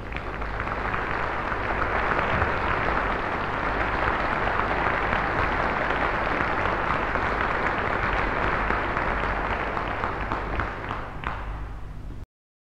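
Audience applauding, greeting the pianist as she returns to the platform. The applause builds over the first couple of seconds, holds steady, then thins slightly near the end.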